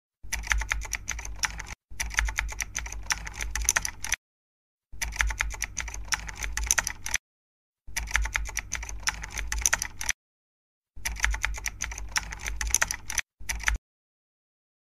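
Rapid keyboard typing sound effect, a fast run of key clicks in five bursts of about two seconds each, every burst cutting off cleanly to silence, with a short final burst near the end.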